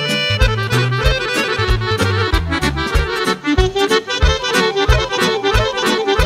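A live band playing music led by accordion, over a steady beat and bass line.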